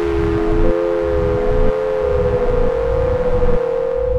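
Electroacoustic computer music: sustained, slowly drifting mid-register tones over a low throbbing pulse that comes round about once a second.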